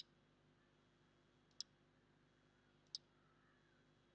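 Three single computer mouse clicks about a second and a half apart, over near silence with a faint steady hum.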